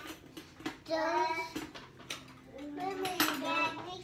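A few short clinks and taps of metal kitchen utensils against dishes, heard between a young child's speech.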